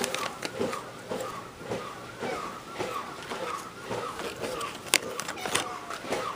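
Toy robot dog running its motors in a steady rhythm of about three short whirs a second, with a sharp click about five seconds in.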